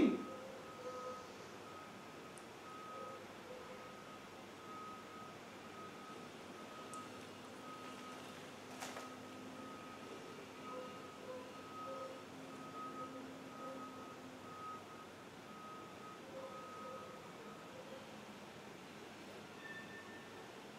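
Quiet room tone with a faint, high electronic beep repeating evenly a little faster than once a second, which stops near the end. There is a single faint click about nine seconds in.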